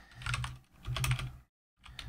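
Typing on a computer keyboard: a quick run of keystrokes, with a short pause about one and a half seconds in.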